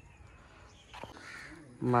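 A short click about a second in, followed by a faint, harsh, rasping sound lasting about half a second.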